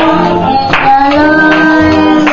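Gospel singing by a woman and a young child into microphones, amplified, with long held notes and a few sharp percussive hits.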